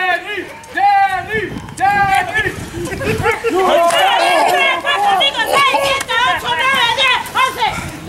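Ringside wrestling crowd shouting and calling out, several voices overlapping, thicker from about halfway through.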